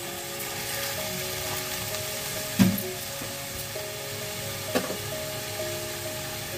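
Vegetables frying in ghee in an aluminium kadhai as a spatula stirs them, a steady sizzle with the spatula knocking against the pan twice, the louder knock about halfway through and another near the end.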